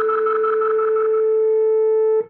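The final sustained chord of a slow singer-songwriter song, with no voice. A fluttering upper tone fades out about a second in and the lower notes drop away, leaving a single held note.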